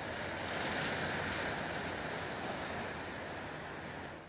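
Ocean surf washing on a beach: a steady, even rush of waves.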